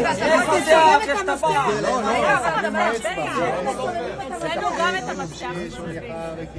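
A group of people talking and calling out over one another, a dense overlapping chatter of several voices.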